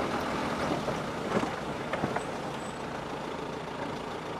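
Steady engine and road noise inside the cabin of a moving Toyota 4x4, with a couple of faint brief knocks.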